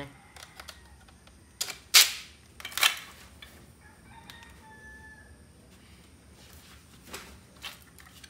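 Hard plastic toy-gun parts knocking and clicking against each other and the tile floor while the blaster is handled and assembled, with two sharp knocks about two and three seconds in.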